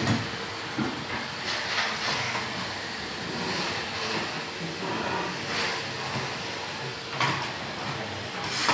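Canister vacuum cleaner running steadily, its suction rushing, with a few short knocks near the start and again near the end.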